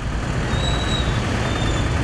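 Busy street traffic: a steady rumble of passing cars, buses and trucks, with a faint high whine about half a second in.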